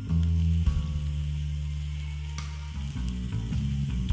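Wood fire crackling and hissing in a fire pit, with a few sharp pops, over background music of sustained low chords.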